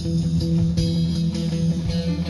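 Instrumental band music: guitar playing over a sustained bass line, with no singing.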